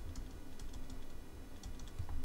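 Faint, irregular light clicks and taps of a stylus writing on a tablet, over a low steady room hum.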